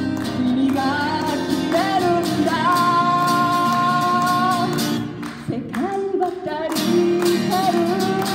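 A woman singing a Japanese pop song to guitar accompaniment. She holds one long high note in the middle, and the music briefly drops away before the song picks up again.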